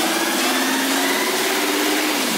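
Trance track in a build-up: a swelling white-noise riser with a synth tone climbing slowly over two held chord notes, the bass and kick filtered out ahead of the drop.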